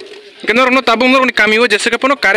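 Only speech: a woman talking loudly after a half-second pause at the start.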